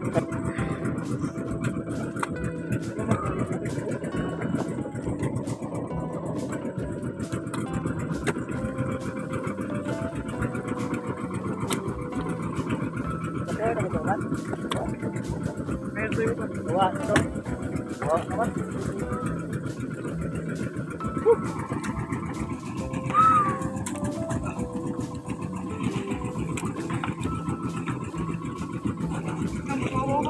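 Steady engine drone with music playing over it and a few brief voices.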